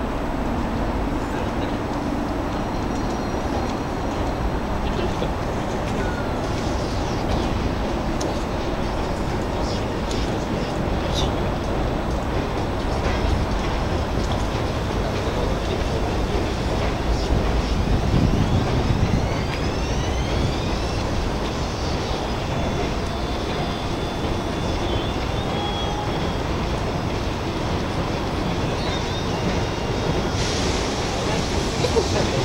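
Steady outdoor city traffic noise, with a louder low rumble as a vehicle passes a little past the middle.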